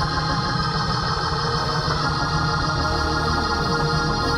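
Worship music under a prayer time: organ-like chords held steady, with no clear beat.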